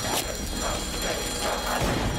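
Clockwork ticking of a wind-up kitchen timer, a little over two ticks a second, over a steady low rumble.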